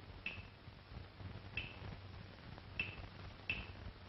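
Four short, sharp clicks at uneven intervals over a faint steady low hum and hiss.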